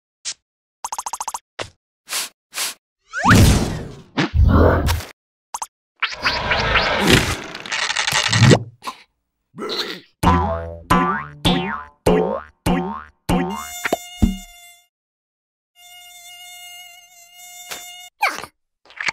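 A string of short cartoon sound effects, then a run of bouncing sounds about two a second, each falling in pitch, as larvae jump on a blown-up balloon. Near the end a mosquito's thin, steady buzzing whine takes over.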